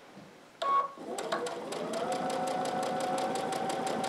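Electric sewing machine sewing a straight-stitch hem on cotton napkin fabric. After a brief sound just over half a second in, the motor starts, speeds up and settles into an even run of about six stitches a second, held to a slow pace to keep the seam straight.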